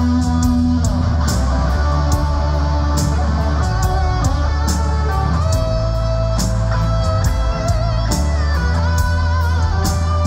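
A live rock band playing: electric guitar lines over held bass guitar notes, with drums keeping time on the cymbals. Near the end a high guitar line wavers in pitch.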